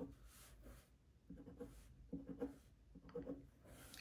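A pen writing on paper: faint, short scratching strokes in several quick clusters as small characters and lines are drawn.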